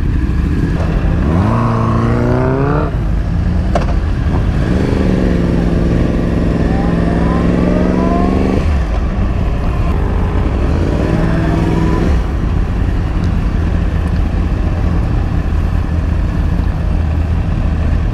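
Sport motorcycle engine pulling away and accelerating. The pitch rises, holds steady for a few seconds, then drops off suddenly about halfway through and rises again briefly, before wind and road noise take over.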